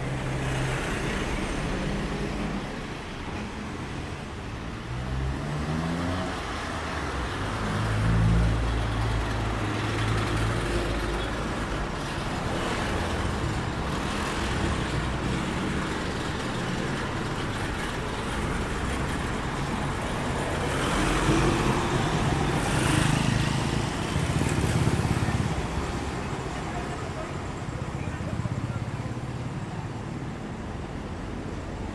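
Street traffic: cars passing by with engines running, one speeding up with a rising engine note about five seconds in, and the loudest passes around eight seconds and again from about 21 to 25 seconds.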